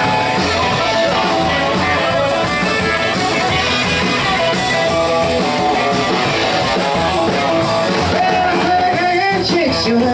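Live rockabilly band playing an instrumental stretch of a rock and roll song: electric guitar over upright double bass and drums, at a steady loud level.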